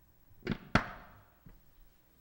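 Lectern gooseneck microphone being wiped with a cloth: two loud bumps and rubs on the mic about half a second and three quarters of a second in, the second the loudest with a short ringing tail, then a softer knock a moment later.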